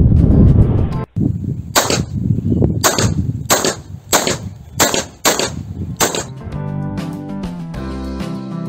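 Seven shots from a Bersa .380 semi-automatic pistol, fired about half a second to a second apart, each a sharp crack with a brief ring-out. Background music plays underneath.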